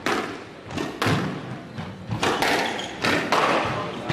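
A squash rally: the hard rubber ball is struck by rackets and hits the court walls, about four sharp hits a second or so apart, each ringing on in the glass-walled court.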